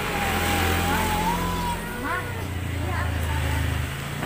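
A motor vehicle's engine running close by, a low rumble that dies away just before the end, with voices over it.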